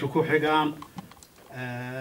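A man's voice into a handheld microphone: a phrase of speech, a short pause with a few faint clicks, then one long syllable held at a steady pitch, as in chanted recitation.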